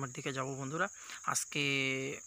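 A man talking, drawing out one long vowel near the end, over a steady high-pitched insect drone.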